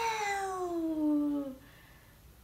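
A woman's voice holding one long, sing-song vowel at the end of a count, "baaa" (Vietnamese for three), rising in pitch and then gliding down before it stops shortly before the end.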